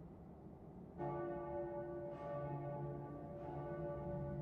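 A low bell tolls slowly, struck about a second in and twice more, each stroke ringing on in several steady overlapping pitches.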